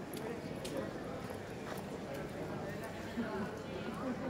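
A murmur of visitors' voices with scattered sharp, irregular clicks of hard steps on stone paving.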